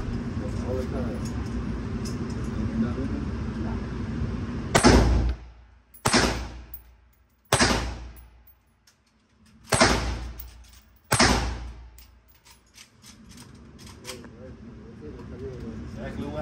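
Five gunshots from an AR-style firearm at an indoor range, spaced about one to two seconds apart and starting about five seconds in. Each shot rings and echoes off the range walls.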